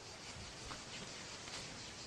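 Faint, steady background hiss of outdoor ambience in a pause, with no distinct sound event.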